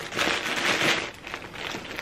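Rustling and crinkling as a skein of baby yarn is handled and pulled out of its packaging, loudest in the first second and then dying down.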